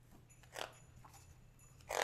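A hardcover picture book being opened and its pages handled: two short, faint rustles of cover and paper, about half a second in and again near the end, over a low steady room hum.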